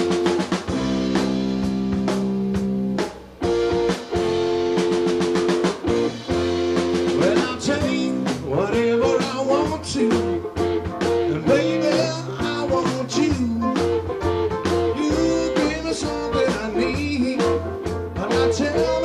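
Live rock band music with guitar, keyboards and drums, starting abruptly. Held chords for the first three seconds, a brief dip, then a steady beat with a wavering lead line over it.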